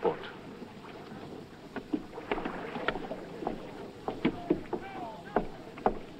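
Faint ambience of a wooden Viking longship's crew at a dock: scattered wooden knocks and a few distant voices over a low steady hiss.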